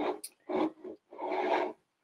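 A woman's voice making a few short, quiet, hesitant sounds between phrases, the last one longer, lasting most of a second.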